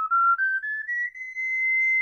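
Transverse ocarina playing the upper part of a rising diatonic scale, the fingers lifted one by one in linear fingering. It climbs step by step, then holds the clear, pure top note, an octave above where the scale began, for about a second.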